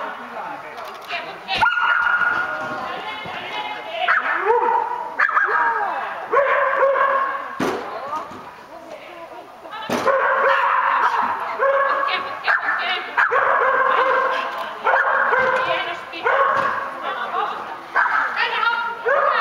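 Border collie barking repeatedly in short runs of yips and barks while running an agility course, busiest in the second half.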